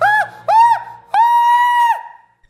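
A young man's high falsetto voice: two short yelping 'hoo' notes, then a longer high note held for nearly a second, performed as a showy high-note vocal in a game.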